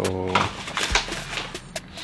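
A man's voice holding a steady, drawn-out 'so' for about half a second, then a few light taps and handling knocks as the foam wrist rest is handled on a wooden desk.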